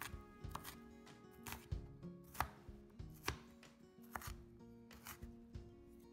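Chef's knife chopping red onion on a wooden cutting board: irregular sharp strokes of the blade hitting the board, about one or two a second, over quiet background music.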